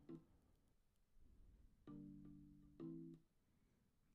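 Near silence: the Logic Pro benchmark playback has cut out on a System Overload error. Two faint pitched notes sound and die away about two and three seconds in.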